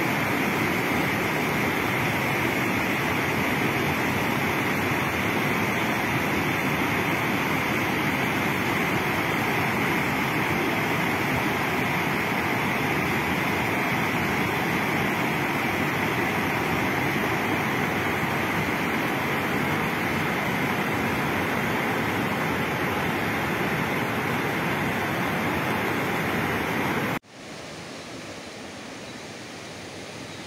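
Thamirabharani river in full flood, fast white water rushing over rocks in a steady loud rush. Near the end it drops suddenly to a quieter, more distant rush.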